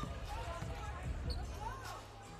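Basketball arena court ambience: a steady low rumble of the hall with faint, scattered voices from the court.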